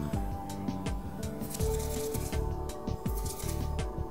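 Background music, with small scissors snipping dubbing from a baitfish fly's body in quick, irregular cuts, several a second.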